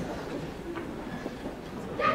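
Faint, steady room noise of a theatre auditorium, with no clear distinct event.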